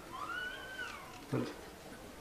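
A faint, high animal call of about a second, rising and then falling in pitch, like a cat's meow. A brief low vocal sound follows just past the middle.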